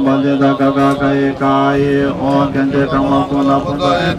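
Tibetan Buddhist monks chanting a mantra, a rapid, repeated recitation held on one steady low pitch.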